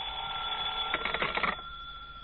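Telephone bell ringing, a steady metallic ring that cuts off about a second and a half in as the call is answered.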